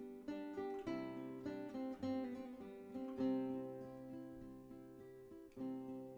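Acoustic guitar music, a run of plucked notes that ring and fade, with a fresh strum near the end.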